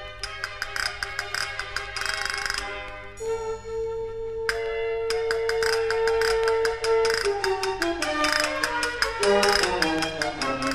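Spanish baroque sonata played by a chamber orchestra with castanets: rapid castanet clicks and rolls over sustained orchestral notes. About three seconds in, a long note is held, then the line falls step by step near the end.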